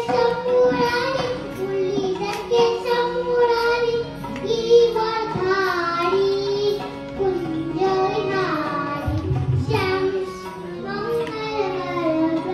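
A small boy singing a Gujarati bhajan into a microphone, a continuous melody with held and gliding notes, accompanied by hand drums and a steady sustained drone.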